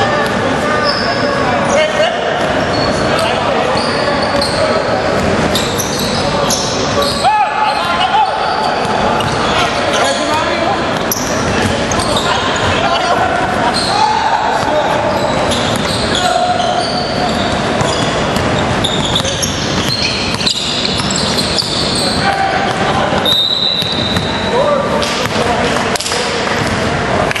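Basketball being bounced on a hardwood gym court amid players' voices, with short high sneaker squeaks, all echoing in a large hall.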